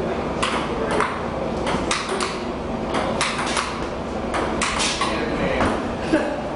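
Table tennis rally: the ball clicking off the paddles and bouncing on the table, a string of sharp taps at about two a second.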